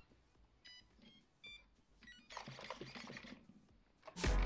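Near silence, with a few faint short high beeps in the first half and a faint rustle in the second half.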